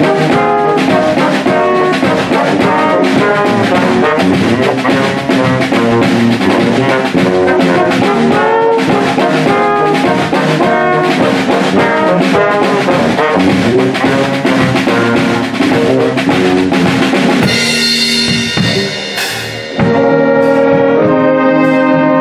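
A big band of saxophones, trombones, trumpets, electric guitar, bass guitar and drum kit playing a brisk jazz number with the drums driving the rhythm. About three-quarters of the way in the rhythm stops and the horns hold long sustained chords, with a brief dip before the last long chord.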